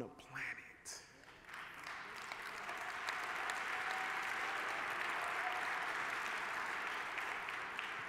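Large audience applauding, swelling in over the first couple of seconds and then holding steady.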